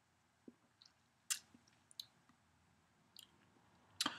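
Quiet mouth sounds while tasting a sip of beer: a few short lip smacks and tongue clicks, the loudest about a second in and another near two seconds.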